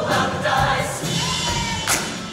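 Mixed show choir singing with a musical accompaniment, with a sharp percussive hit near the end.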